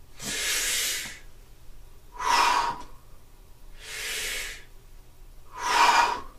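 A man breathing deeply through the Wim Hof method's forced breaths: two full breath cycles, four loud rushes of air about a second long with short pauses between them.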